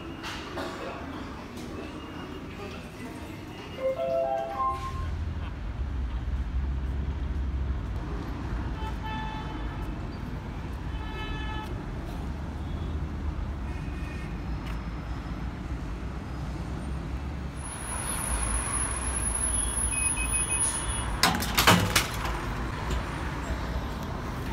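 Street traffic ambience with buses and cars running, a steady low rumble and a horn-like tone sounding several times around ten seconds in. Before that, a few seconds of quieter station ambience with a short rising chime, and a brief loud clatter near the end.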